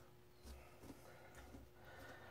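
Near silence, with a few faint, soft clicks from hands handling small parts.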